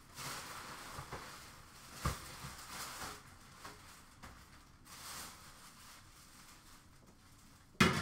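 Hockey card packs and cards being handled on a counter: soft rustling and sliding with a few light clicks, then a sharp knock near the end.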